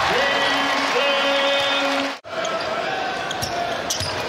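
Basketball game sound in an arena: a ball dribbling on the hardwood court over crowd noise, with held steady tones through the first two seconds. The sound drops out abruptly about two seconds in, then the game noise resumes.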